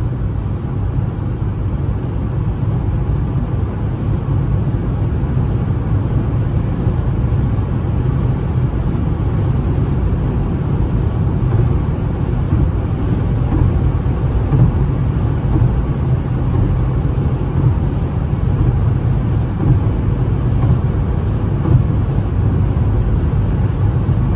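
Inside the cabin of a Citroën C3 1.0, whose three-cylinder engine is cruising at high highway speed of around 150 km/h. There is a steady low engine drone under an even rush of tyre and road noise.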